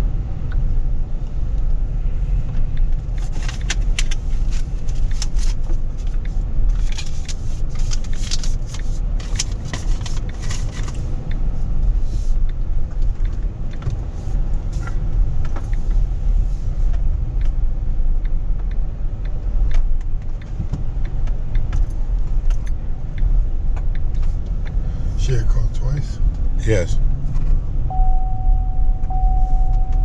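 Engine and road rumble heard inside a car's cabin while it drives. A stretch of scattered light clicks and rattles runs through the first third, and a steady single tone starts near the end.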